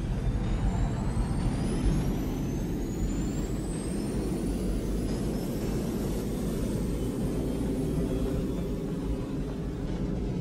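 Deep, steady rumble with several thin, high whistling tones slowly rising in pitch over the first few seconds: a synthesized fly-over sound effect.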